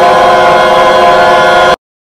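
Many voices of a virtual choir holding one loud sustained chord, which cuts off abruptly near the end.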